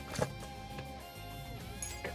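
Quiet background music with steady held notes, and a brief crackle about a quarter second in.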